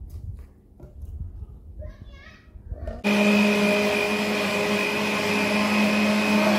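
Philips countertop blender switched on about halfway through, its motor running steadily as it mixes chocolate pudding powder and milk.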